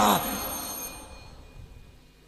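A man's amplified voice ends a phrase and its echo dies away into a pause. Faint, thin, steady high-pitched ringing tones fade out over the first second and a half.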